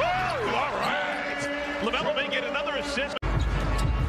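Basketball game sound in an arena: crowd noise, with short sneaker squeaks on the hardwood court, first at the start and again about two seconds in, and the ball bouncing. About three seconds in the sound cuts out for an instant and comes back as a louder, deeper crowd sound.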